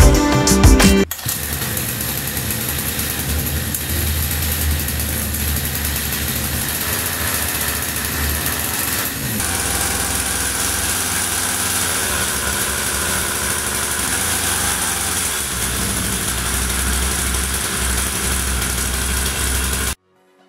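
Background music that cuts off about a second in, then a small 49cc two-stroke engine on a homemade bicycle scooter running steadily.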